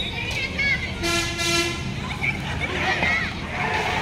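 A single horn toot lasting under a second, about a second in, over shouting voices.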